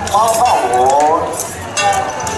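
Metal percussion of a temple-procession troupe: cymbal clashes and bright metallic clinking, one clash near the start and another just before the end, with a high wavering call or horn line over the first second.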